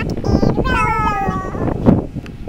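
A long, high meow sliding down in pitch for about a second, with a bump near the end.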